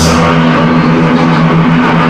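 Live metal band with distorted electric guitars and bass holding loud, low, sustained notes, with little cymbal, at the opening of a song.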